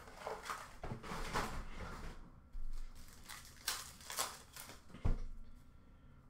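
Hockey card packs being handled and torn open: foil wrappers rustling and crinkling, with a few short, sharper rips and a soft thud about five seconds in.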